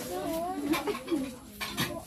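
Women's voices with three short, sharp clinks like a china plate touching a hard surface.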